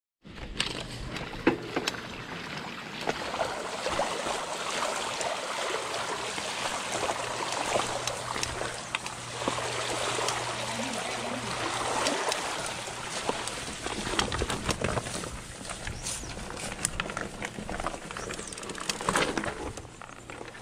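Mountain bike ridden over a muddy, wet dirt trail: tyres rolling and splashing through mud and puddles, with scattered clicks and knocks from the bike over the rough ground and a steady low hum underneath. It quiets near the end as the bike slows to a stop.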